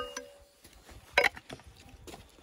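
A metal digging tool clinking against rock: a ringing clink at the start that fades over about half a second, then a single sharp knock a little over a second in.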